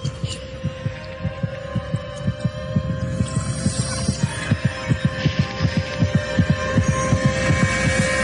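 Sound design of low throbbing pulses, several a second like a heartbeat, over a steady hum. It grows louder towards the end and cuts off suddenly.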